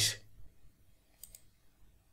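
Two quick, faint computer mouse clicks in close succession, a little over a second in.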